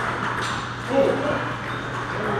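Table tennis balls clicking off paddles and table during play, over the chatter of a large hall, with a brief louder sound about a second in.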